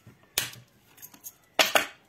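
Small hand-held metal hole punch snapping shut through cardstock: a sharp click about half a second in, then a louder double click near the end.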